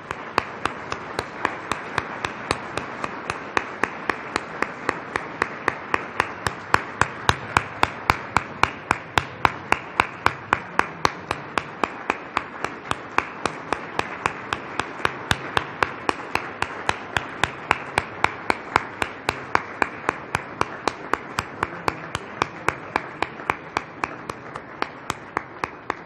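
Standing ovation: a roomful of people applauding steadily, with one person's claps close to the microphone standing out sharp and regular, about three a second.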